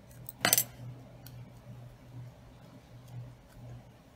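A metal binder clip clicks once, sharply, about half a second in, as it is worked off the folded ribbon. A few fainter clicks and handling sounds follow over a low steady hum.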